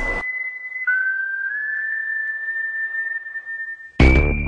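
A steady, high-pitched whistle-like tone that cuts out just after the start, comes back about a second in slightly lower, rises a little and then holds.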